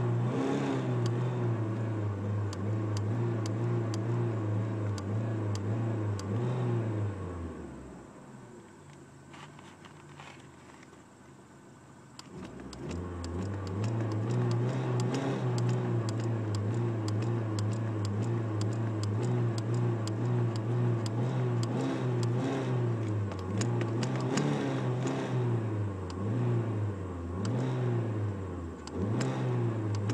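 Car engine revved by foot on the gas pedal, heard from the driver's footwell. The revs are held steady, fall away about seven seconds in, and stay low and quiet for about four seconds. They then climb back up and are held again, with a few small dips near the end.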